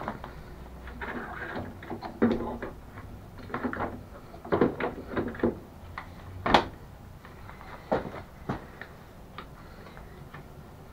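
Heavy 12 V gel batteries (MK Power 8G27) being set down and shifted into a mobility scooter's battery tray: a series of knocks and clunks, the loudest a sharp knock about six and a half seconds in.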